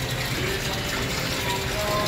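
Steady rushing background noise in a greenhouse, with faint distant voices underneath.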